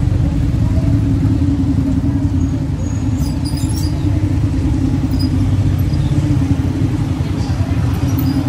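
Small motorcycles running slowly in stop-and-go street traffic close by, a steady low engine hum over traffic rumble.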